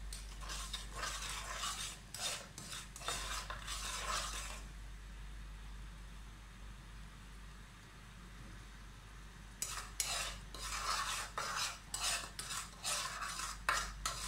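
A metal spoon stirring and scraping in a non-stick kadai, in two spells of quick strokes with a quieter pause between. Under the strokes is a faint sizzle of bubbling fat in the pan.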